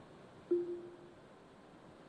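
Quiet pause with low room tone, broken about half a second in by a short, steady, single-pitched tone that lasts just over half a second.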